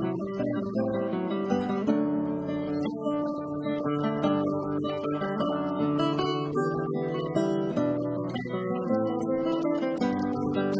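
Acoustic guitar music, strummed and plucked, in an instrumental passage with no singing.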